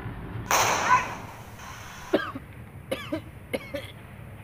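A firecracker bang about half a second in, followed by a few short coughs from a person caught in the smoke.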